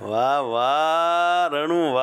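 A man's voice chanting a long held note, a drawn-out syllable of a scripture verse sung during recitation, followed by a shorter second note near the end.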